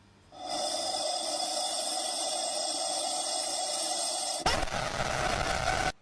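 Rubber chicken toy giving a long, steady squawk. About four and a half seconds in it turns harsher and fuller, then cuts off suddenly near the end.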